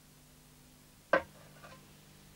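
A frying pan being hung on its hook: one sharp knock about a second in, then a fainter second knock half a second later.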